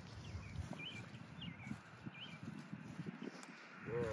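Soft, irregular footsteps through grass with a faint low wind rumble, while a bird gives four short, curling chirps in the first half.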